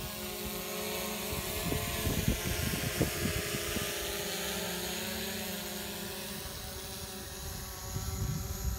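DJI Mavic Pro quadcopter flying close overhead, its propellers giving a steady buzzing whine with several held pitches. Irregular low thumps sound through the first half.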